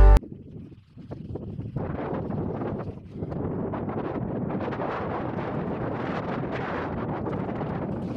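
Wind buffeting the microphone: an irregular rushing noise that begins as the music cuts off, dips twice in the first three seconds, then runs fairly steady.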